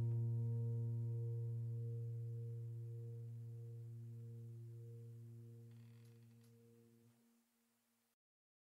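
The last chord of the background music rings on and slowly dies away, fading out about seven seconds in.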